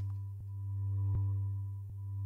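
Looped marimba sample in a software synth's sample engine, playing in back-and-forth (ping-pong) loop mode as a sustained low tone. Its loudness swells and fades about every second and a half, with a faint click each time the loop turns around.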